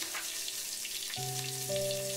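Hot oil sizzling steadily as chopped green chilli fries with mustard and cumin seeds in a pan. Soft sustained background music notes come in about a second in.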